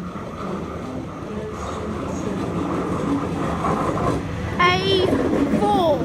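Sydney Trains Waratah A-set electric double-deck train running into the platform, its rumble growing louder as it passes close by. A brief wavering high-pitched sound comes about two-thirds of the way through.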